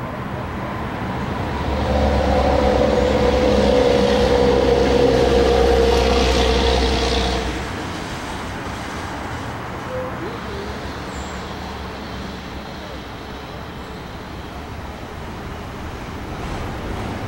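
A motor vehicle's engine running nearby: a steady low hum that swells about two seconds in, holds for roughly six seconds, then drops away sharply, leaving lower outdoor background noise.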